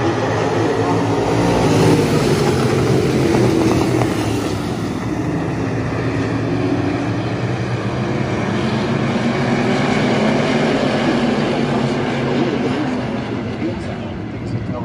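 A field of IMCA Stock Car V8 engines racing around a dirt oval. Several engines run at once, their pitch rising and falling as the cars drive through the turns and down the straights. The sound eases somewhat near the end as the pack moves to the far side.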